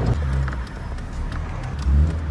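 Engine and road noise heard inside the cabin of a moving 2008 Honda Fit (GD3): a steady low rumble with a few faint ticks.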